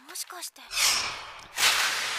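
Two whooshing rushes of noise from the anime's soundtrack, about a second apart, the second one carrying on steadily. A brief line of dialogue comes just before.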